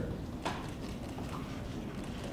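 Camera shutters clicking at irregular intervals, one sharp click about half a second in and fainter ones after, over the steady hubbub of a crowded press room.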